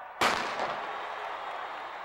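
Starter's pistol fired for a sprint start: one sharp crack about a quarter second in, followed by a long fading tail of noise.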